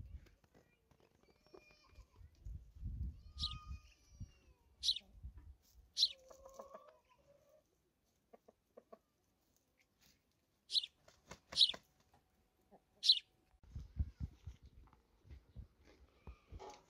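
Chickens in a yard: about six short, sharp high-pitched chirps scattered a second or two apart, a lower call around the middle, and soft low rumbling near the start and again near the end.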